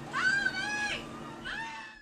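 A person's high-pitched wailing scream: one long held cry, then a shorter, lower one about a second and a half in.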